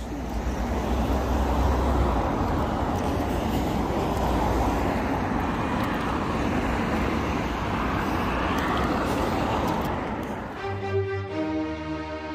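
Road traffic noise: a steady rush of passing cars with a low rumble. About eleven seconds in it gives way to slow string music.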